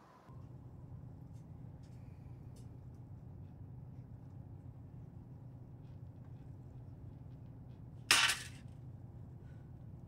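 A low, steady hum with faint scattered ticks, broken about eight seconds in by a short, loud burst of hiss.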